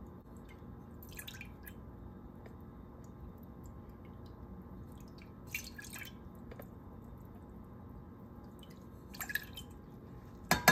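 Soy sauce poured from a measuring cup into a stainless steel saucepan: faint trickling and dripping of liquid into the pot, with a few soft splashes about a second in, midway and near the end.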